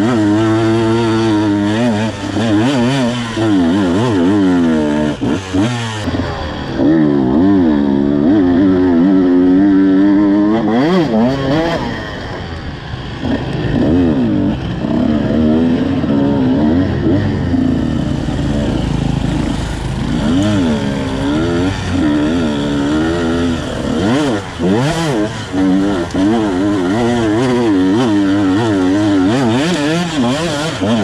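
Two-stroke enduro motorcycle engine, heard on board, revving up and down over and over as the throttle is worked over rough trail, with a few short drops where the throttle is closed.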